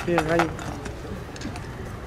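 A man's voice says a short word at the start, then low outdoor background noise with faint distant chatter.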